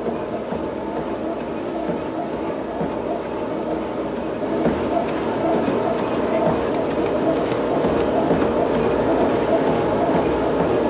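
Motorized treadmill running steadily under a man walking near a jog during an exercise stress test, his footfalls on the moving belt. The sound grows a little louder about halfway through.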